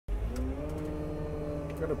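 Komatsu 320 wheel loader's diesel engine running steadily, a droning hum with a few held tones, heard from inside the cab.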